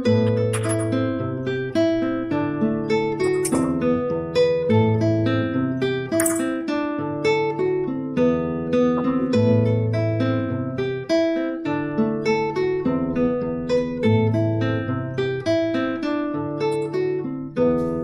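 Nylon-string classical guitar played fingerstyle, a bass line held under a run of plucked melody notes, continuous throughout.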